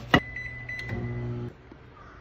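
Convenience-store microwave oven: the door shuts with a sharp click, then a high electronic beep sounds for under a second over the oven's steady low running hum, which cuts off about one and a half seconds in.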